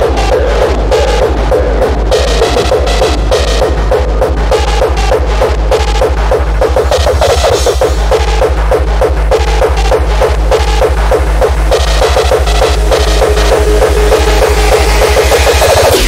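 Uptempo hardcore electronic music: a fast, steady, hard kick drum pounding under a repeating mid-pitched synth riff, getting brighter toward the end.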